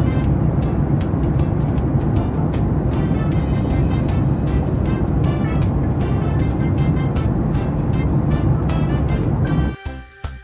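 Background music with a steady beat over the steady roar of a jet airliner cabin in flight. Near the end the roar drops away and the music carries on alone.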